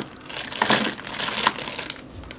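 Clear plastic zip-top bag holding the empty eyeshadow cases, crinkling irregularly as it is handled.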